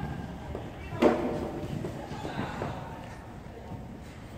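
Hoofbeats of a pony cantering on a sand arena surface, with a sudden loud sound about a second in.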